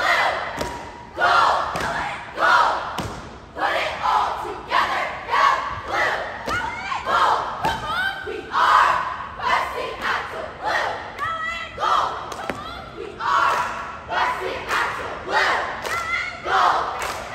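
Cheerleading squad shouting a cheer in unison, rhythmic chanted phrases about once a second, with thumps between them.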